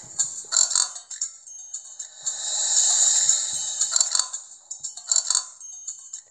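Background music from a children's Bible storybook app, with a swelling wash of sound between about two and four seconds in.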